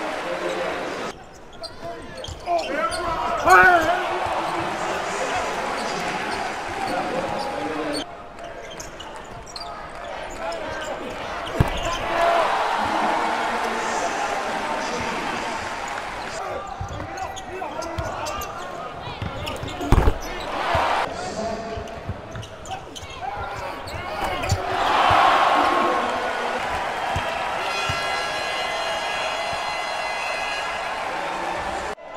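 Basketball arena game sound: a steady crowd din with voices, changing abruptly several times as the clips cut between plays. There are sharp thuds of the ball at about 12 and 20 seconds in, and a crowd swell about 25 seconds in.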